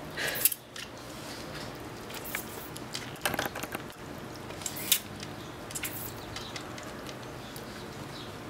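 Plastic trigger spray bottle squeezed several times at irregular intervals, short spritzes of water with trigger clicks, as a ferret licks at the nozzle to drink.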